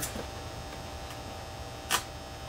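Hands working tape onto a Depron foam tube, heard as a faint handling rustle over a steady low hum, with one short, sharp scratch near the end.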